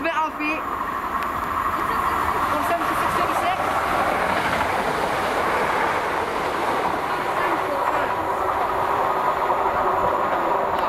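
CrossCountry Class 170 Turbostar diesel multiple unit passing close on the near line, a steady rumble of wheels on rails and underfloor diesel engines.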